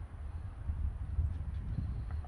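Wind buffeting the microphone outdoors: an uneven low rumble with a few faint light ticks.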